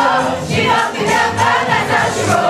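Live pop song sung by a group of male vocalists into microphones over amplified music, with many voices singing together.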